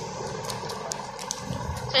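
A few short, faint crinkles of plastic packaging as wrapped dress suits are handled, over steady background noise.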